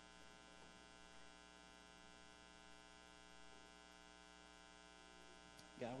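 Near silence filled by a steady electrical mains hum, heard as many even tones stacked one above another. A man's voice starts just at the end.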